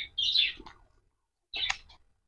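Small birds chirping: three short, high-pitched chirps, one at the start, one just after, and one about a second and a half in.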